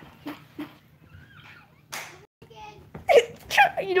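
A few soft taps in a quiet room, with a faint muffled voice in between; close-up talking starts near the end.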